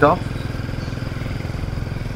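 Motorcycle engine running steadily under way, heard from the bike itself, with a fast, even pulse.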